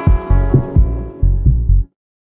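Short electronic music sting for the ESA logo: deep pulsing bass notes under held higher tones, cutting off abruptly near the end.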